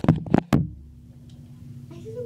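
Several quick knocks in the first half second, handling noise as the phone filming is grabbed and bumped, then a low steady hum.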